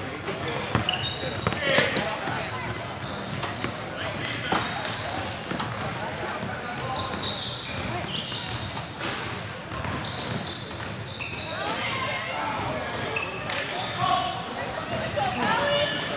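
Indoor basketball game on a hardwood court: a ball bouncing and sneakers squeaking in short high chirps, under chatter and calls from players and spectators in a large, echoing gym.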